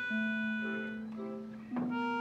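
Music with sustained, reedy-sounding notes: a held low note that shifts pitch a little just after the start, under a softly repeating figure of shorter higher notes.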